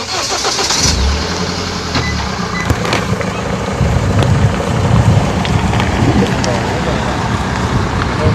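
Steady vehicle engine and road noise: a low rumble under a continuous hiss, heaviest for a second or so near the start.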